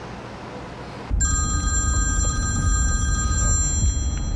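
A phone ringing: an electronic ringtone of several steady high tones that starts suddenly about a second in and holds for nearly three seconds, over a low rumble of car cabin road noise.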